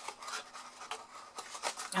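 Small craft scissors snipping wedge notches into cardstock: several short, crisp snips with light paper rustling between them.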